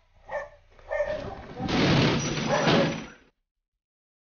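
Hand-held battering ram slamming against a metal gate in several heavy impacts, mixed with shouting voices. The sound cuts off suddenly a little after three seconds.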